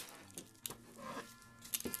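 Faint acoustic guitar background music under soft taps and rustles of hands pressing clear packing tape down onto a paper napkin, with a sharper click near the end.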